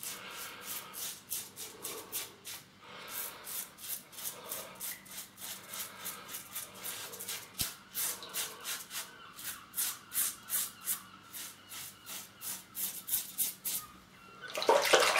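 Rockwell 6S double-edge safety razor with a Wilkinson Sword blade scraping through three days of lathered beard stubble, in runs of quick short strokes, several a second, with brief pauses between runs.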